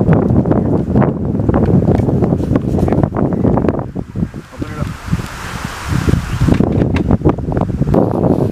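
Wind buffeting the microphone in a choppy low rumble, with indistinct voices under it. About halfway through, the rumble eases for a couple of seconds and a softer hiss comes through before it returns.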